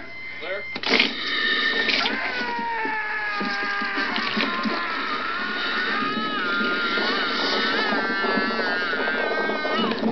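A sudden loud crash about a second in, then a man screaming in long, wavering cries for the rest of the clip, as a horror-film victim is attacked by the creature.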